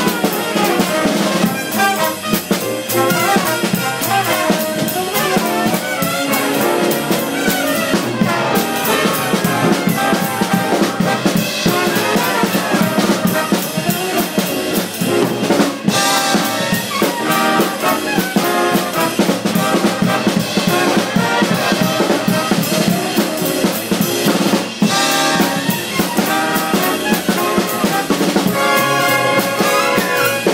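A big band playing live: saxophone and brass sections with upright bass and a drum kit. Sharp cymbal strikes accent the music now and then.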